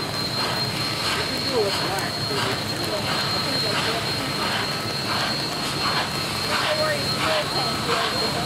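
Union Pacific 844, a 4-8-4 steam locomotive, moving slowly: its exhaust chuffs at about two beats a second over a steady hissing roar, with people's voices chattering around it.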